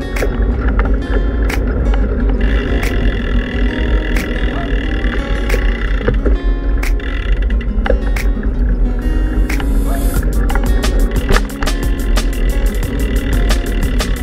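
Background music track with held chords and a beat. A fast, even ticking percussion comes in about ten seconds in.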